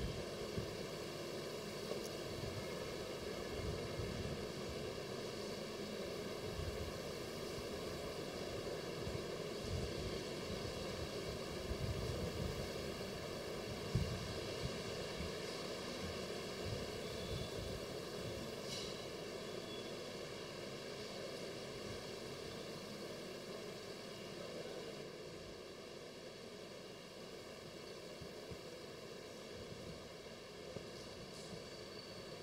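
Faint steady hiss of room tone and sound-system noise, with a few soft low knocks, the clearest about a third of the way in.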